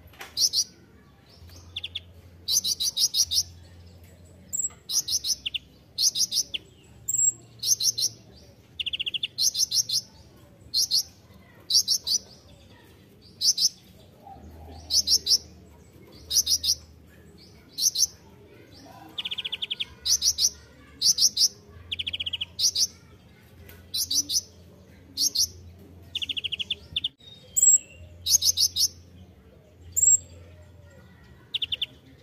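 Male kolibri ninja (Van Hasselt's sunbird) singing: short, rapid, high-pitched twittering phrases repeated about once a second, some of them lower and buzzier.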